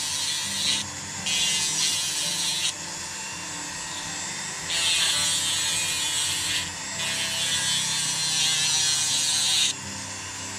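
Corded handheld rotary carving tool running steadily, its small round bit grinding a slot into a basswood fin. The cutting comes in four stretches of louder, rougher grinding, with the plain motor hum between them, and the last stretch stops just before the end.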